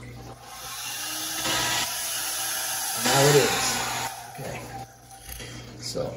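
Hair dryer switched on briefly, running as a steady hiss of fan and blown air for about four seconds before being switched off.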